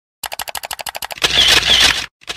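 Camera shutter sound effect: a fast run of about a dozen clicks, around twelve a second, then a louder noisy burst of under a second that cuts off sharply.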